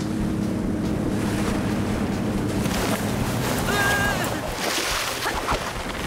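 Motorboat engine running with wind and sea waves, a steady hum over a rushing noise; the hum fades out about three seconds in. A brief wavering high call sounds about four seconds in.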